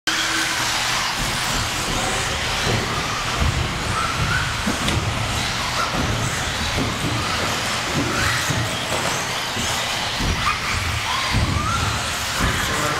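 Several 1/10-scale 4wd electric RC buggies racing: short motor whines that rise in pitch as the cars accelerate, several times over a steady bed of track noise, with scattered low thumps.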